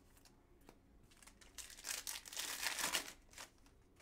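Crinkling of a foil trading-card pack wrapper as it is handled, a crackly burst lasting about two seconds in the middle.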